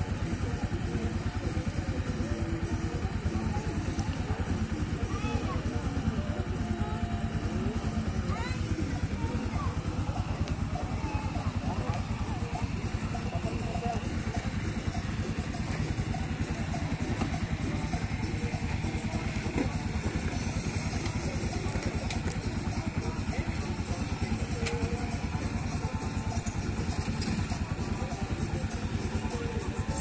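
Motorcycle engines idling steadily close by, with voices and music in the background.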